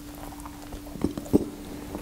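Close-miked mouth sounds of chewing a cream-filled choux pastry ring, with two sharp clicks about a second in, the second louder, over a faint steady hum.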